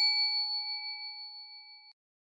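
A notification-bell "ding" sound effect: a single struck bell tone with a few clear overtones, ringing on and fading steadily until it dies away near the end.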